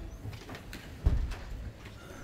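Footsteps and scattered clicks of people moving about a room, with one heavy low thump about a second in.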